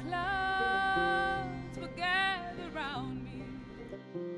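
A woman singing a slow folk song, a long held note followed by a shorter phrase with vibrato, over low sustained string accompaniment.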